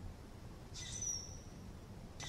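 Faint forest background with a bird's call: one short, high whistled note about a second in.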